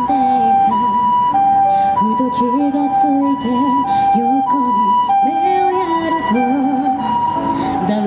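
Ambulance siren sounding its hi-lo two-tone call, a higher and a lower note swapping about every 0.6 seconds, the Japanese "pee-po" pattern. It plays over a woman singing a ballad into a microphone with backing music.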